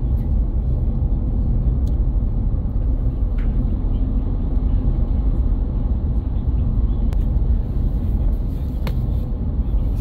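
Steady road rumble heard from inside a car's cabin while driving at highway speed: tyre and engine noise.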